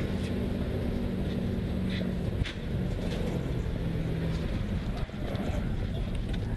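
Subaru WRX STI's turbocharged flat-four engine heard from inside the cabin, running at full throttle at about 150 mph, with heavy road and wind noise. The engine note drops briefly twice, about two and a half seconds in and about five seconds in, as the car hits a bump at speed and nearly gets away from the driver.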